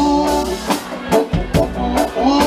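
Live band playing an upbeat number: drum kit keeping a steady beat under electric guitars and saxophone.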